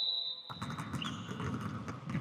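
Several basketballs being dribbled at once on a hardwood gym floor: a continuous, irregular patter of overlapping bounces and footsteps starting about half a second in.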